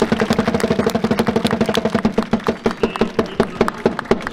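Supporters' drums beaten in a fast, even roll under a crowd of fans holding a long sung note together, which fades near the end.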